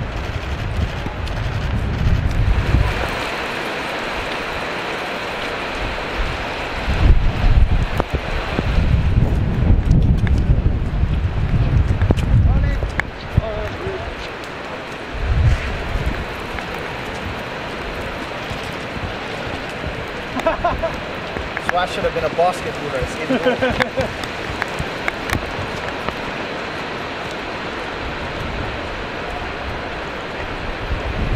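Steady rain falling on a wet paved walkway and pitch, with gusts of wind buffeting the microphone in low rumbles, strongest in the first few seconds and again in the middle.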